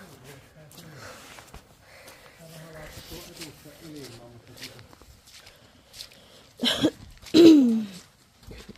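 Faint talking in the background, then two short, loud vocal sounds with falling pitch near the end.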